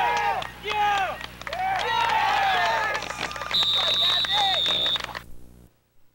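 Spectators shouting from the sideline of a soccer game, then one long referee's whistle blast of about a second and a half, starting about three and a half seconds in.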